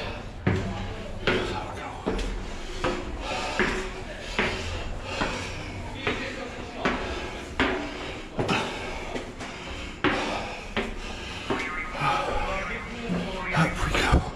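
A person puffing hard while climbing stone spiral steps, breaths and footfalls coming in a steady rhythm of a little over one a second.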